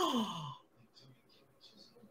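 A woman's short sighing "oh" that slides down in pitch and lasts about half a second, followed by near silence.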